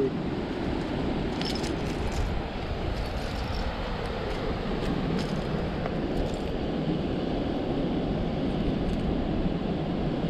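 Steady rush of ocean surf and wind on the microphone, with a few faint clicks of shells being moved by hand.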